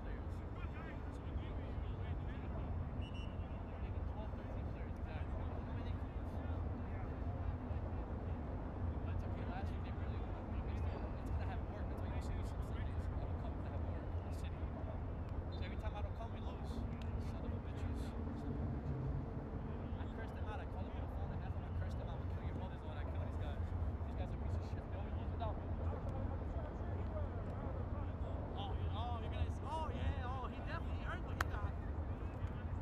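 Outdoor ambience on a soccer pitch: faint voices of players calling to one another over a steady low rumble, with scattered short sharp clicks.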